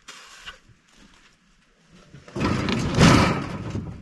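Logs being shifted on a metal log carrier: a loud scraping rustle lasting about a second and a half, starting a little past the middle, with a few faint knocks near the start.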